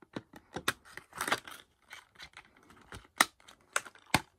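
Discs and a steelbook case's plastic disc tray being handled: a run of sharp plastic clicks, a brief scraping rustle about a second in, and two louder clicks near the end.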